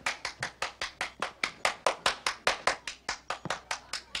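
Hand claps in a steady fast rhythm, about five a second, each one sharp and distinct, keeping time as a song is about to start.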